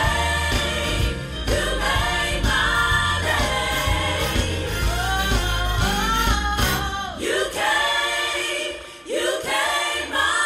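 Gospel choir singing with instrumental backing. The low accompaniment drops away about seven seconds in, and the voices carry on nearly alone.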